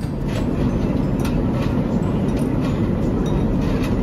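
Airliner cabin noise in flight: a loud, steady roar of engines and airflow, with a few faint clicks.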